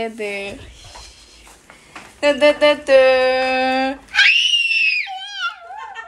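Excited voices of a woman and a small child over a Christmas present: short calls, a long steady held note, then a high-pitched squeal about four seconds in.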